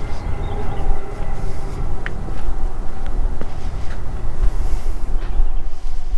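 Wind rumbling on the microphone outdoors, with a faint steady mechanical hum underneath.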